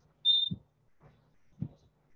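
A whiteboard being wiped clean in about three short rubbing strokes, with a single short high-pitched beep near the start that is the loudest sound.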